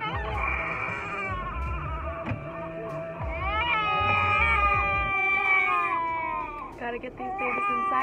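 A young child crying and wailing from a car seat, with one long drawn-out cry that slowly falls in pitch past the middle, over the low rumble of the car on the road.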